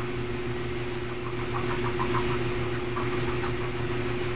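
A steady low hum under an even hiss of background noise, with faint brief sounds in the middle.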